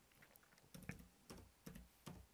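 A few faint computer keyboard keystrokes, separate clicks starting a little after halfway in: a file name being typed.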